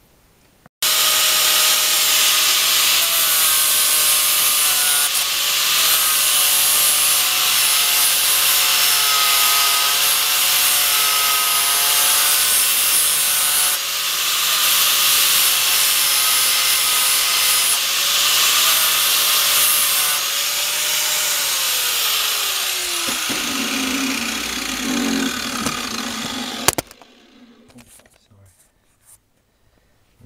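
A 4-inch angle grinder with a sanding disc grinding the steel head of an axe to clean it. The motor whine wavers as the disc is worked over the metal, and drops steeply in pitch near the end. The grinding starts about a second in and cuts off abruptly a few seconds before the end.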